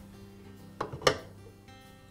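Soft background acoustic guitar music, with one sharp click about a second in, a metal gear being pressed into place in the paint sprayer's drive housing.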